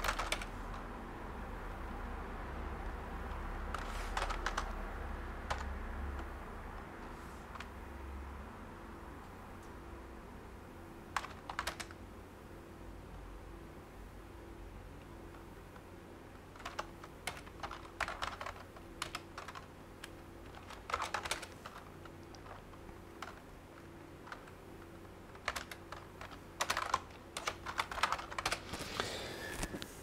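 Typing on a computer keyboard: short runs of keystrokes separated by pauses, with a faint low hum during the first several seconds.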